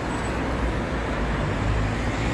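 Steady road traffic noise: a continuous rumble of passing cars on a nearby road.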